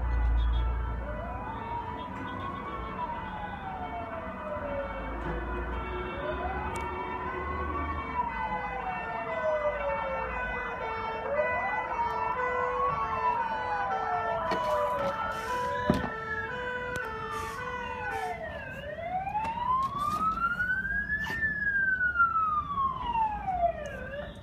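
Emergency vehicle sirens: a wail rising and falling slowly every four to five seconds, sweeping higher in the second half, over a steady alternating two-note hi-lo tone. A low vehicle rumble sits under the first few seconds.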